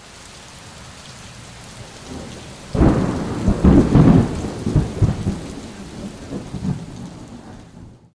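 Thunder: a sudden crack about three seconds in, rumbling and crackling for a couple of seconds, then dying away, over a steady hiss of rain.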